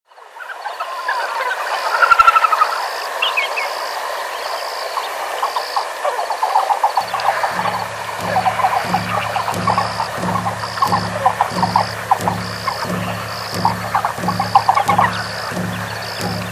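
Nature ambience of many short animal calls, with a high call repeating at an even pace about once a second. About seven seconds in, a low pulse joins at about one and a half beats a second.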